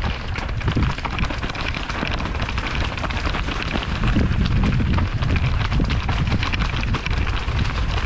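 Steel hardtail mountain bike riding down a rocky, leaf-covered trail: tyres crunching over stones and dry leaves and the bike rattling with many small rapid knocks, under a steady low rumble of wind on the microphone.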